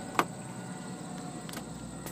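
Faint steady outdoor background with a thin, high, unbroken whine, broken by one sharp click shortly after the start and a fainter one about a second and a half in, typical of a hand-held phone being handled.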